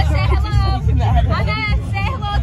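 Music with a heavy bass line, with people's voices and crowd chatter over it.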